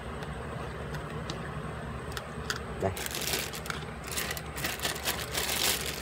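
Thin plastic bag crinkling and rustling in repeated bursts from about halfway through, over a steady low hum, with a few light clicks just before.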